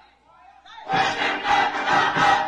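A choir of many voices comes in suddenly and loudly together about a second in, after a quiet start.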